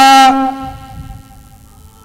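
A man's long, drawn-out call of a lap number, the final "-ja" of the count held on one steady pitch: loud for about the first half second, then trailing off and gone by the end.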